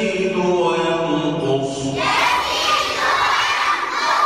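A man chants a line of an Arabic creed text in a held, sing-song voice. About two seconds in, a group of children chant it back in unison.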